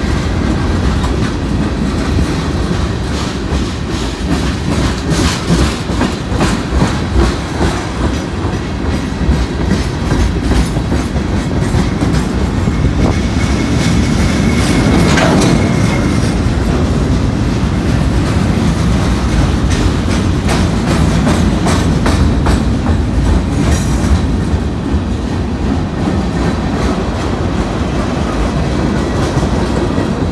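Freight train cars rolling past close by: a steady low rumble with wheels clicking over the rail joints, the clicking densest in the first dozen seconds. A faint high wheel squeal sounds for a few seconds near the middle.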